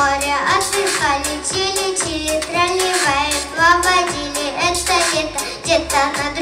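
A young girl singing into a microphone over backing music with a steady beat.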